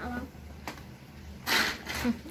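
Hand-powered mini food chopper chopping hazelnuts: one brief whirring rattle of blades and nuts about one and a half seconds in, after a small click.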